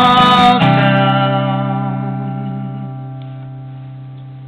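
Steel-string acoustic guitar: a final strummed chord, struck about half a second in, rings out and slowly fades away, closing the song. It follows a last sung note at the very start.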